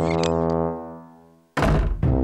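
Cartoon score: a held low brass note, with a few light clicks, fades away, then a sudden loud thunk of a sound effect lands about one and a half seconds in.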